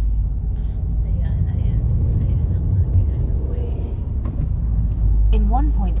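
Steady low rumble of road and engine noise heard from inside a moving car's cabin. A sat-nav voice starts giving a distance and roundabout instruction near the end.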